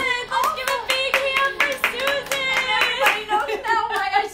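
Hands clapping, about three claps a second, with drawn-out vocal cheers over them at the end of a song.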